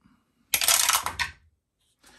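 Two dice dropped through a dice tower, rattling down and clattering into its tray in one quick burst about half a second in, fading within a second.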